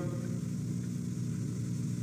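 Steady low electrical hum with a buzzy edge: the background hum of an old speech recording, heard in a gap between words.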